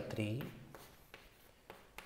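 Chalk writing on a blackboard: a few faint taps and scratches as a formula is written, after a short spoken word at the start.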